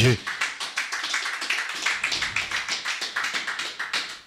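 Congregation applauding: many hands clapping in a dense, irregular patter that thins and fades toward the end.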